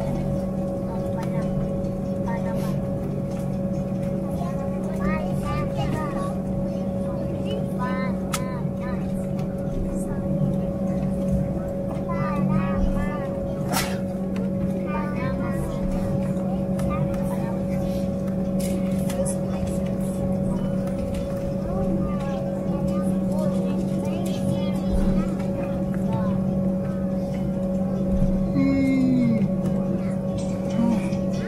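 Airliner cabin of an Embraer E190 taxiing, with the steady drone of its GE CF34 turbofans at taxi power and the cabin air system, held at one even pitch throughout. Faint passenger voices murmur in the background now and then.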